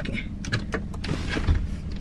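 Handling noises inside a car cabin: scattered clicks and knocks with a dull thump about one and a half seconds in, over a steady low hum.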